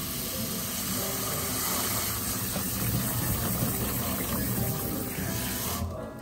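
Kitchen tap running into a plastic bowl of blueberries, a steady rush of water filling the bowl that cuts off suddenly just before the end.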